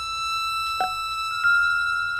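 A steady, high sustained musical tone with overtones, held through the whole stretch and stepping slightly higher near the end, with a short sharp click or knock a little before the middle and another just before the pitch step.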